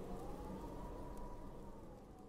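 The last chord of a youth choir dying away in a reverberant hall, one faint high held note lingering and fading toward silence.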